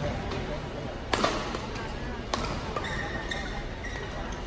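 Badminton rackets striking a shuttlecock in a doubles rally: a sharp crack about a second in, another just over a second later, over the murmur of voices in the hall.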